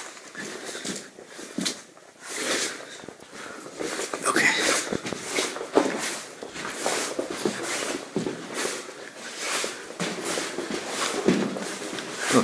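Footsteps crunching over gravel and rock rubble on a mine tunnel floor, at a steady walking pace of about two steps a second from about four seconds in, in the close, enclosed sound of the tunnel.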